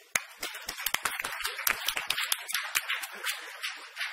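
A small audience applauding: a quick, irregular run of individual hand claps that thins out near the end.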